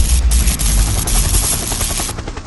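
Loud logo sound effect: a deep rumble under fast, even rattling, like rapid gunfire or rotor beats, slowly fading toward the end.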